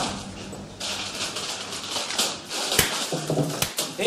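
Film soundtrack of a scuffle: a noisy commotion with a few sharp knocks and thuds in the second half.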